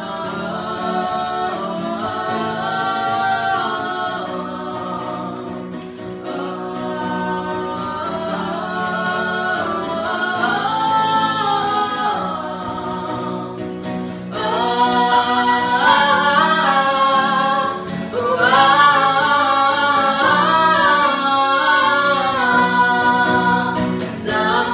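Two female voices singing in harmony over a strummed nylon-string classical guitar, getting louder about halfway through.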